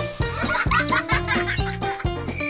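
Upbeat children's background music with a steady bass beat, with short high chirping sound effects layered over it in the first second.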